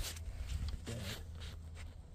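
Dry fallen leaves and clothing rustling and crackling in short scratchy bursts, over a steady low rumble from the phone being moved and handled.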